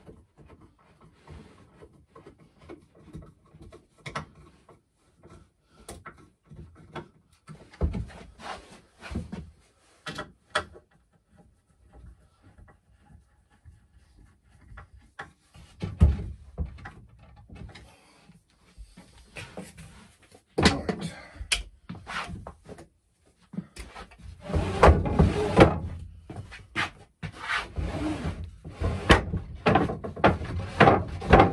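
Wooden bed slats and frame being worked by hand: scattered knocks, taps and rubbing of timber, with a couple of louder knocks midway, turning into dense, louder clattering in the last six seconds.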